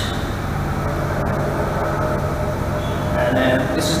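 Steady low mechanical hum with a few fixed low tones under an even background noise, unchanging throughout. A short voice comes in near the end.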